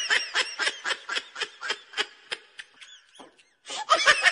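High-pitched giggling laughter in quick, rapid bursts, about five a second, that trail off about three seconds in, then break out again loudly near the end.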